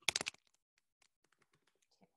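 Typing on a computer keyboard: a quick run of keystrokes in the first third of a second, then a few faint, scattered clicks.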